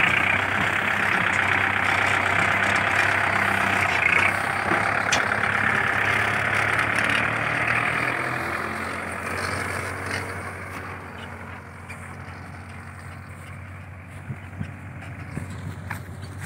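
Kubota MU4501 tractor's four-cylinder diesel engine running steadily under load as it pulls a fully loaded trolley of paddy. It is loud at first and fades away over the second half as the tractor moves off.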